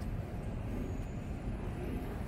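Steady low rumble of background noise, with no distinct events standing out.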